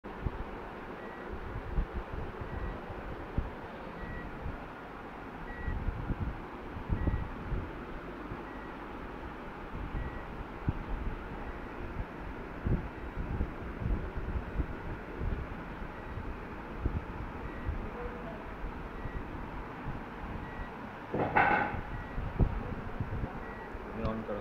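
Irregular low knocks and bumps from the homemade gearbox rig being handled, over a steady hiss, with a faint short high electronic beep repeating about one and a half times a second. A brief louder burst with a pitched tone comes a few seconds before the end.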